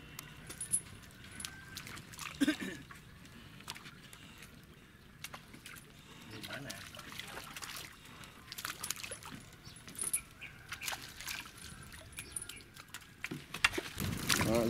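Scattered small splashes and trickling water from a fish net being hauled out of the river, with fish jumping and flipping in it; faint voices now and then.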